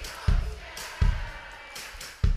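Live band music in a sparse passage: two heavy kick-drum beats about three-quarters of a second apart, with faint voices underneath.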